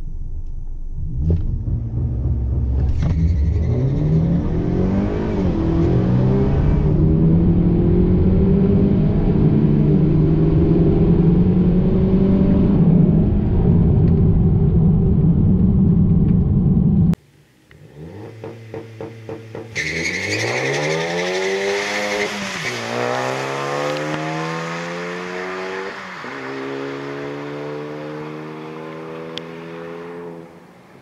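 A turbocharged four-cylinder car engine heard from inside the cabin, loud and rumbly, its revs rising and holding as it stages at the line. About halfway through it cuts abruptly to cars accelerating down a drag strip heard from trackside: the engine pitch climbs, drops at a couple of upshifts, and fades as the cars pull away.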